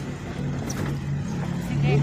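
Pickup truck engine running while driving, heard from the open cargo bed as a steady low hum over rumbling road noise.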